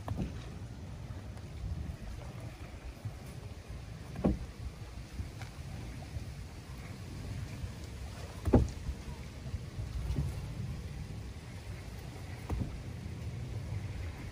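Bare feet landing single-leg hops on a rubber training mat laid over wooden dock planks: three dull thuds about four seconds apart, the middle one the loudest, over a steady low rumble.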